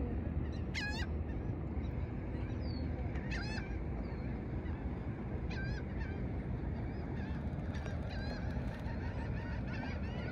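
Bird calls repeating about every two seconds, each a short run of quick, high notes, over a steady low rumble.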